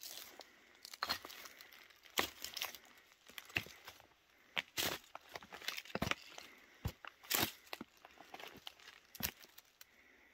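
Footsteps crunching through dry fallen leaves and loose stones, in uneven steps roughly one a second.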